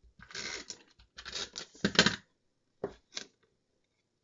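Adhesive tape runner rolled across the back of a cardstock piece in several short scratchy strokes, the last about three seconds in.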